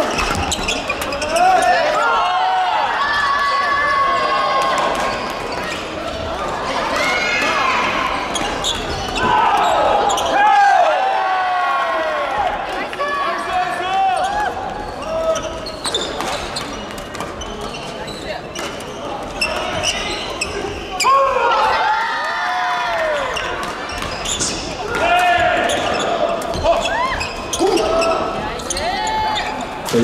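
Badminton play echoing in a large sports hall: rackets striking shuttlecocks and shoes squeaking on the wooden court floor, with rallies running on several courts at once. Voices and calls from players carry through the hall.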